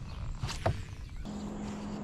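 A fishing cast: a quick swish of a spinning rod and line about a quarter of the way in, followed by a steady low hum that starts about two-thirds of the way through and keeps going.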